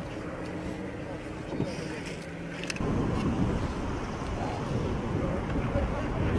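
A vehicle engine running with a steady hum; about three seconds in the sound switches abruptly to a louder, rougher engine rumble.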